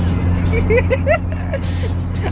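Steady engine and road drone inside a moving car's cabin, with a woman's short run of laughter about half a second in.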